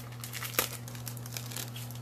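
Packaging crinkling and crackling as it is handled, with irregular sharp crackles throughout and a steady low hum underneath.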